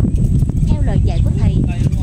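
Wind rumbling steadily on the microphone, with indistinct voice-like sounds and a few light knocks over it.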